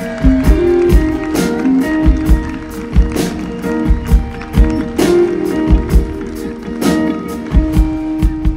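A live band playing the instrumental opening of a song: a drum kit beat with regular kick-drum thumps and sharp snare and cymbal hits, under sustained electric guitar and keyboard notes that change every half second or so.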